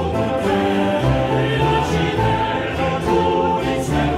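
A choir singing held, overlapping notes in several parts, with a low bass line moving underneath.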